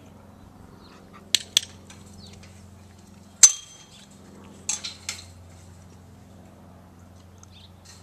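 Chain-link gate latch and frame clinking as the gate is worked: two light metallic clicks, then a sharp ringing clank about three and a half seconds in as the gate swings open, and two more clinks about a second later.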